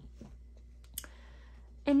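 A few light clicks over quiet room tone, the sharpest about a second in.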